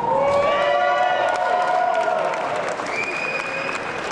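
Audience applauding, with long drawn-out cheering calls over the clapping.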